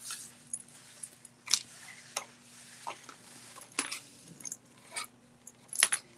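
Handling noise of a coil zipper tape being picked up and worked in the hands: scattered light clicks and rustles, a few each second or two.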